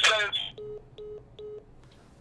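A phone caller's voice cuts off, then three short, evenly spaced beeps of a call-ended tone sound on the phone line: the call has dropped, which the host puts down to the caller's prepaid credit running out.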